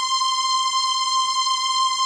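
A steady electronic beep: one high, unchanging tone, loud and held without a break, that starts abruptly.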